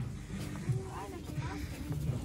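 Faint, indistinct talking in the background over a low steady hum, with no clear words.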